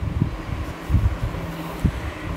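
Low rumbling background noise with a few soft thumps.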